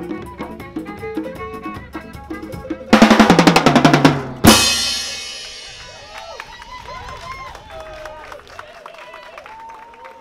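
Balafon and drums playing together, then a loud, fast roll on the drum kit about three seconds in, ending in a cymbal crash that rings away as the piece closes. Voices call out as the crash fades.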